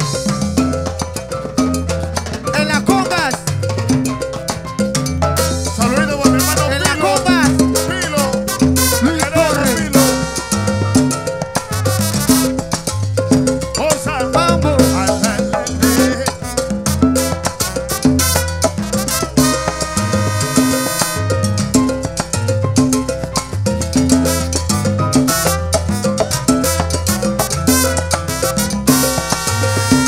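Live salsa orchestra playing an instrumental intro: bass, congas and piano under a steady beat. The brass section comes in with held chords about a third of the way in, again past two-thirds, and near the end.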